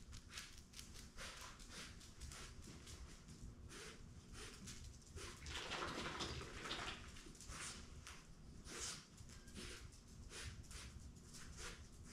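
Faint, irregular ticks and scuffles of a puppy moving about during a scent search, with a louder rustling stretch around the middle.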